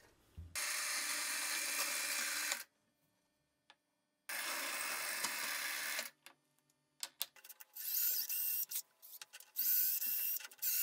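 Drill boring into an aluminium pulley: two steady stretches of drilling that cut off abruptly, with a pause between them, then shorter stop-start bursts of drilling near the end.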